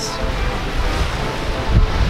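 Wind blowing across the microphone with the wash of small waves on the shore.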